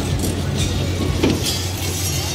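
Steady low hum of fairground machinery, with a few faint clinks.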